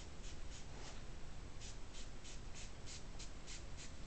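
Trigger spray bottle of water and castor oil squirted about a dozen times in quick succession, a short hiss with each pull, with a brief pause about a second in, misting a section of hair to dampen it.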